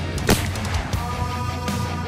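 A single shot from a Marlin lever-action .30-30 rifle about a third of a second in, striking the soft armor plate, heard over loud background music that runs throughout.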